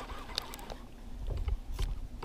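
Low wind and water rumble around a drifting fishing boat, with a few faint clicks of rod and reel handling.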